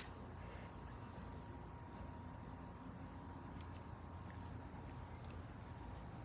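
Faint, steady high-pitched insect chirring over a low background rumble.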